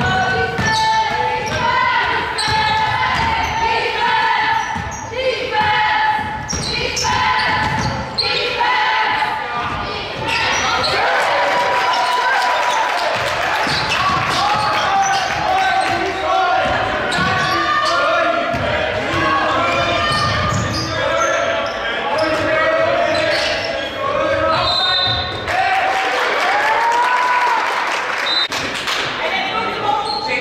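A basketball being dribbled and bounced on a hardwood gym floor in live play, a run of sharp knocks that is thickest in the first ten seconds. Shouting voices from players and the bench run under it throughout.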